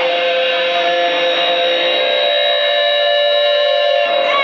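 Sustained drone from a live band's amplified instruments: several steady held tones, with no drums or vocals.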